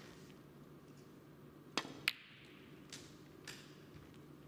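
A snooker shot. The cue tip strikes the cue ball with a sharp click, and about a third of a second later a second, equally sharp click comes as the cue ball hits an object ball. Two softer knocks follow as the balls run on.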